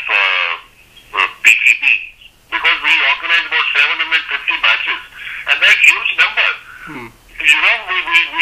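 Speech only: a voice talking over a telephone line, thin and narrow-band, with a few short pauses.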